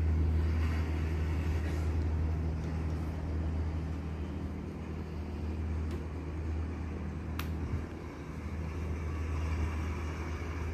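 A steady low hum of background noise, with a short sharp click about seven seconds in.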